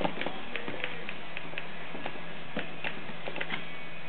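Irregular light metallic clicks and ticks as a 13 mm keyed drill chuck, already knocked loose, is unscrewed by hand from the drill's threaded spindle.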